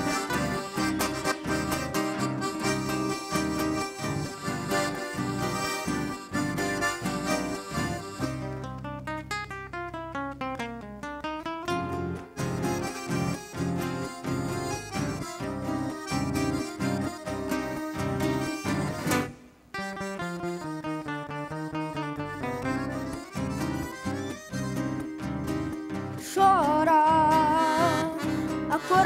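Live instrumental break in gaúcho regional music: a Pampiana piano accordion carries the melody over rhythmically strummed acoustic guitars, with a quick run of notes down and back up about ten seconds in and a brief pause near twenty seconds. A boy's singing voice comes back in near the end.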